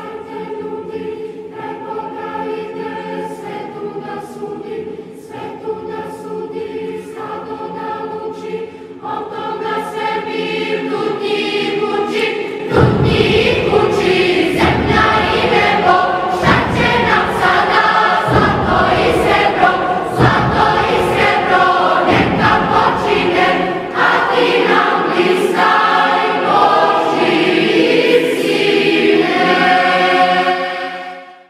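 Choir singing a slow religious song in Serbo-Croatian about the Lord coming and raising the dead, with long held chords. About 13 s in it swells louder and a heavy, steady beat comes in under the voices.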